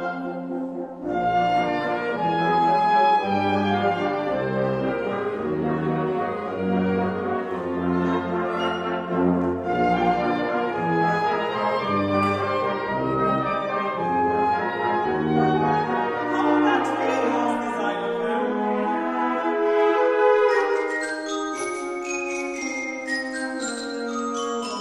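Wind band playing, with a tuba carrying a melody through a series of moving low notes over the brass and woodwinds. Near the end the low line drops away and bright, bell-like struck notes enter.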